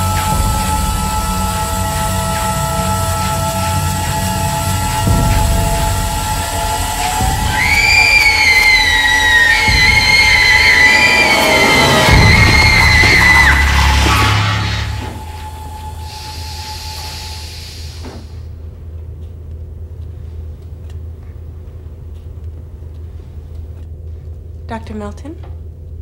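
Film score of sustained, ominous tones, then a young girl screaming for several seconds, wavering in pitch, from about eight seconds in. The scream cuts off around fourteen seconds, leaving a quieter low steady hum.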